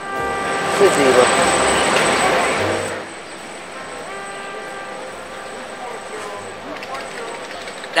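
A container of pills being shaken, a noisy rattle for about the first three seconds: a street seller's signal that there are pills for sale.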